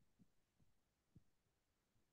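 Near silence, broken by a few faint, short low thumps.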